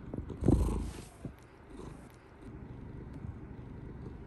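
Domestic cat purring right against the microphone, a steady close low rumble. About half a second in there is one loud bump as the cat knocks against the phone.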